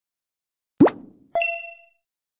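Two animation sound effects: a short plop that rises in pitch, then about half a second later a bright ding that rings briefly and fades.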